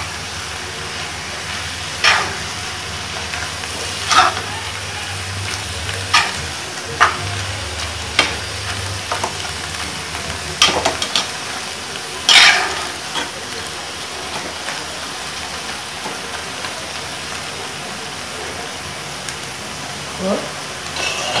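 Amaranth greens and grated coconut frying in a nonstick pan with a steady sizzle. A steel spatula scrapes and tosses them against the pan every second or two through the first dozen seconds, then only the sizzle goes on.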